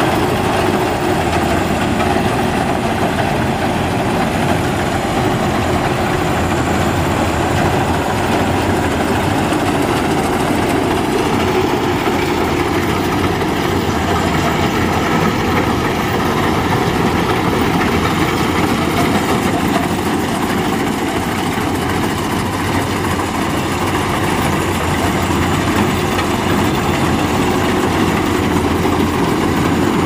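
Maxxi Bimo Xtreme rice combine harvester running steadily at working speed as it cuts and threshes rice: a constant engine drone with a steady hum over the machinery's rumble.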